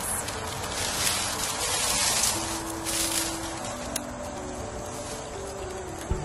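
Dry garlic stalks and papery leaves rustling and crackling in bursts as a bulb is pulled out of a dried bundle, over soft background music with long held notes.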